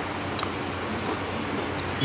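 Steady room noise, an even hiss with a faint high whine, and one light click about half a second in.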